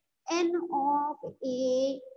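A woman's voice speaking in drawn-out, held tones, words stretched out with short breaks.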